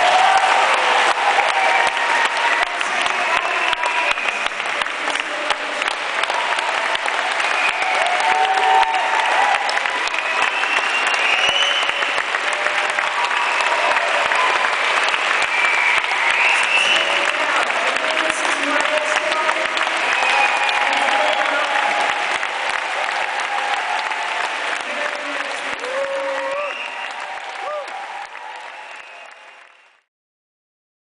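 Concert audience applauding and cheering, a dense clatter of clapping with shouting voices mixed in, fading away over the last few seconds before cutting off.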